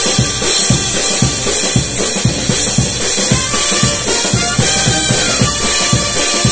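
Live band playing dance music, with a drum kit keeping a steady, loud beat of bass drum, snare and cymbals at about two to three strokes a second.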